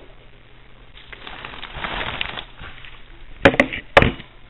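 Plastic packaging crinkling and rustling as ink bottles are pulled out of a mailer, then a few sharp knocks near the end.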